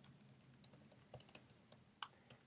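Faint typing on a computer keyboard: a quick, irregular run of key clicks as a login email address is typed.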